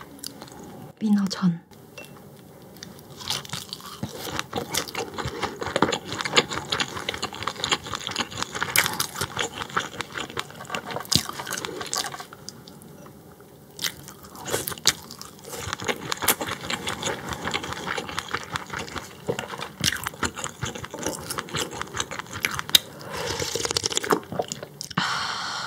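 Close-miked chewing of raw croaker sashimi: a steady run of small wet clicks and crunches. There is a brief hum of the voice about a second in, and near the end a slurp from a spoon of croaker broth.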